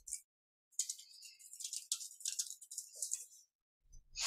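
Computer keyboard typing: a fast run of light key clicks lasting about three seconds, starting near the first second.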